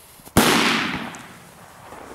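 A Mammoth firecracker from Original Fireworks exploding: one loud, sharp bang about a third of a second in, followed by about a second of echo dying away.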